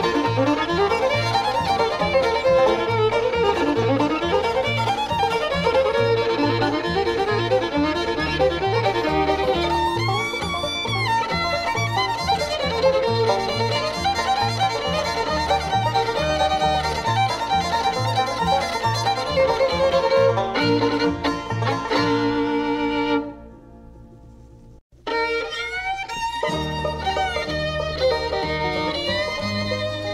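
Bluegrass string band playing an instrumental break: fiddle leads over banjo, guitar and bass with a walking bass line. About three quarters of the way in the tune ends and there is a short gap of about two seconds, then a fiddle starts the next tune.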